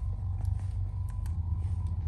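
Adjustable bed base's massage vibration motor running after being switched on from the remote: a steady low buzzing hum.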